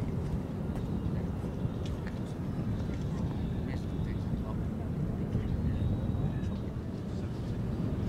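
Steady low rumble of outdoor background noise, with faint distant voices.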